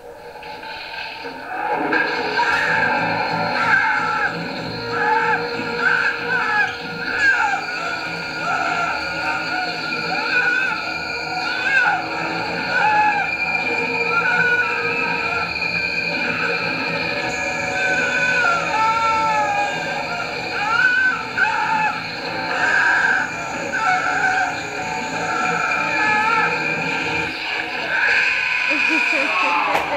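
A horror film's soundtrack playing through the room's speakers: music with wavering high notes, and voices.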